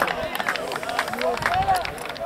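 Several people shouting and calling over one another on an open football pitch during play, no words clear.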